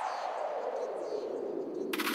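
A falling noise-sweep effect (a downlifter) in the breakdown of a Bacardi house track, with the bass and beat dropped out; the whoosh sinks steadily in pitch. A sharp hit near the end brings the music back in.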